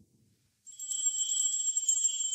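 Altar bells shaken in a continuous high jingling that starts about two-thirds of a second in. This is the ringing that marks the elevation of the consecrated host at Mass.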